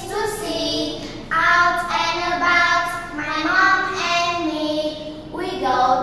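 Young girls singing a simple English children's song in held, sung notes.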